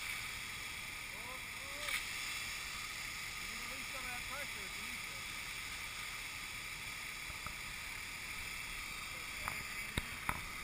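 Charged fire hose spraying water from its nozzle: a steady rushing hiss, with a short knock about two seconds in.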